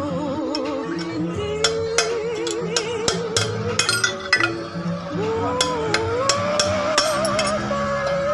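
Sharp metal clinks and taps, a dozen or so scattered from about a second and a half in, as a small chainsaw's crankshaft and connecting-rod parts are handled and tapped with a steel punch on a steel plate. Underneath runs music with a wavering singing voice.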